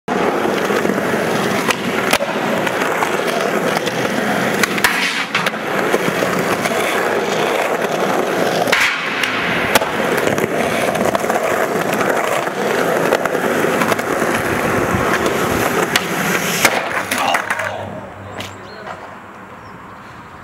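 Skateboard wheels rolling loudly over a smooth concrete floor, with several sharp wooden clacks of the board along the way. The rolling stops suddenly near the end and gives way to a much quieter background.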